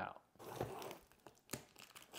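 Cardboard shipping box being handled as it is opened: faint crinkling and scraping of cardboard, with a sharp tap about one and a half seconds in.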